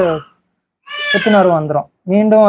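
Only speech: a man's voice trails off, pauses briefly, then draws out one long syllable that falls in pitch.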